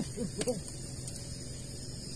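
A brief voice exclamation just after the start, then a steady background of high-pitched night insects chirring over a low hum.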